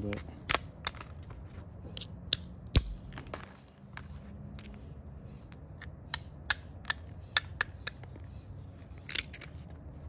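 Hammerstone striking the edge of a rhyolite preform in flintknapping: about fifteen sharp clacks at irregular intervals as flakes are driven off, the loudest about three seconds in.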